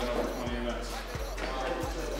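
Background music with a deep bass beat thudding about every two-thirds of a second, under a murmur of crowd voices.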